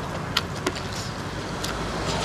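Eating with a metal spoon from a bowl of papaya salad: a few short sharp clicks as the spoon scoops and food goes to the mouth, over a steady low hum.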